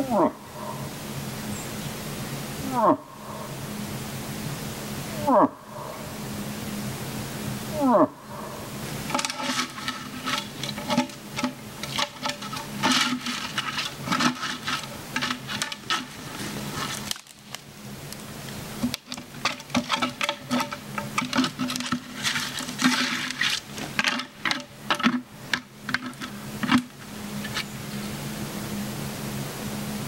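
A hunter's imitation cow moose calls: five short moans, each falling steeply in pitch, repeated about every two and a half seconds. After that comes a long stretch of dense crackling and rustling, broken by a pause in the middle.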